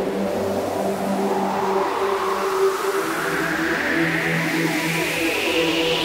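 Electronic trance music in a breakdown: sustained synth chords with no beat, under a noise sweep that rises steadily in pitch, building toward the drop.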